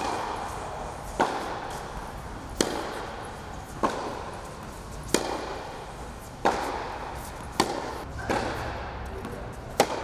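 Tennis balls struck by rackets in a rally: a sharp pop about every second and a quarter, nine in all, each ringing on in the echo of an indoor tennis hall.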